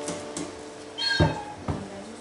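The last of a tune's final notes dying away, then a few light knocks and a short high squeak with a thump about a second in.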